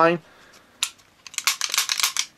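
Sharp mechanical clicks from a Beretta PX4 Storm pistol being handled: one click about a second in, then a quick run of clicks near the end.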